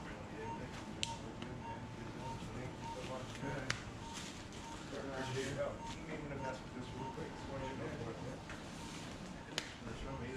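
Operating-room patient monitor beeping steadily, a short high beep repeating a few times a second with each pulse. A few sharp clicks and murmured voices sit under it.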